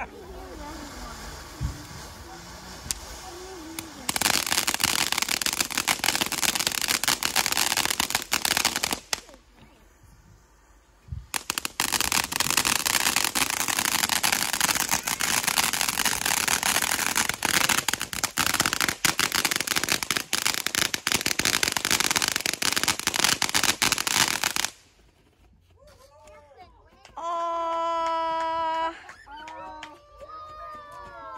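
Ground fountain fireworks spraying sparks with a dense, loud crackle. It comes in two long stretches with a pause of about two seconds between them.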